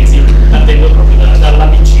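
A man speaking through a handheld microphone, over a loud, steady electrical mains hum with its overtones.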